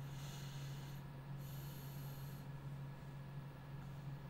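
Two short breaths through the nose into a close microphone, hissy and high, about a second apart, over a steady low electrical hum.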